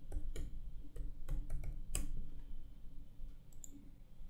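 Light, irregular clicks of a computer keyboard and mouse: about eight in the first two seconds, then a couple more near the end, over a faint steady low hum.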